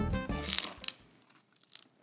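Crunch of a bite into a crisp deep-fried taquito shell: sharp crackles about half a second in and another short crackle near the end, after background music cuts out.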